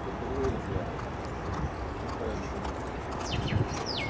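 Hoofbeats of a racehorse galloping on a dirt track, heard over steady outdoor background noise. A bird calls with quick falling whistles near the end.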